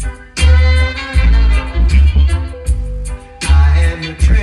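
Music played loud through a sound system's speaker stack on test, with heavy bass notes that come in a steady rhythm.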